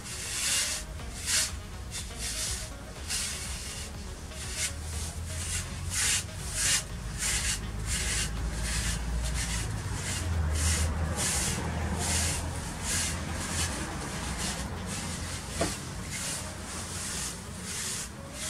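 Rubber grooming brush (a Magic Brush) rubbed in quick strokes over a mini Shetland pony's coat, a scratchy stroke about twice a second throughout, over a low rumble.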